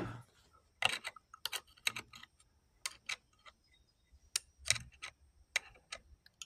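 Irregular light clicks and taps as the plastic gearbox housing of a Craftsman V20 cordless mini chainsaw is handled and a screwdriver tip pokes at its small pinion gear.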